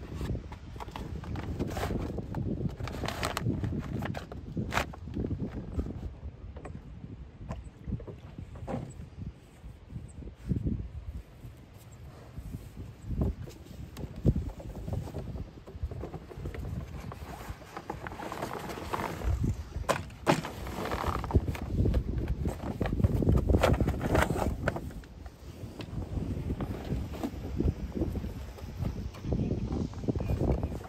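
Rope and sailcloth rustling and knocking as line is wrapped around a furled staysail to lash it down, with scattered sharp clicks over a low rumble on the microphone that swells and fades.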